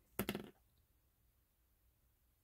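Near silence, after a brief snatch of a man's voice in the first half second.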